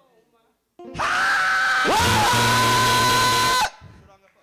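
A man's voice through a microphone, loud over a rushing noise: a long held shout that starts about a second in, swoops up in pitch near the middle and is held, then cuts off shortly before the end.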